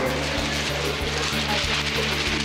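A sheet of newspaper swung and shaken through the air, rustling and flapping to imitate the wind, over background music with a steady low beat.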